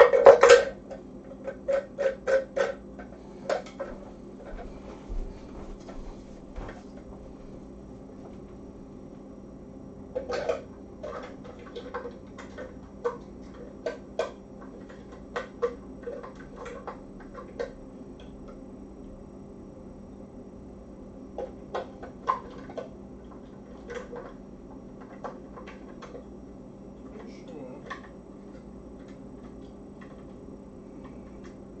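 Kitchen clatter: a loud knock at the start, then a quick run of sharp clicks and taps, then scattered light taps, like utensils and cookware being handled. A steady low hum runs underneath.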